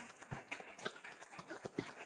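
Faint handling noise: irregular small clicks and knocks with rustling of cloth and paper, as a folded judge's robe is passed from hand to hand.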